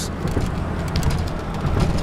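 Steady road and engine rumble heard inside the cabin of a car driving at highway speed.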